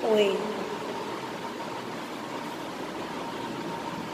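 A brief spoken "O A" at the start, then steady background hiss with a faint, even whine, like a fan running in the room.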